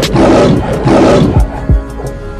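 Two loud lion roars, each about half a second long, over intro music with steady sustained chords and deep falling bass hits. This is a lion-roar sound effect in a channel intro.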